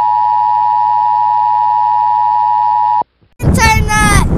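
Steady, loud, high-pitched test tone of the kind played with television colour bars, cutting off suddenly about three seconds in. After a brief silence, a child's loud voice begins near the end.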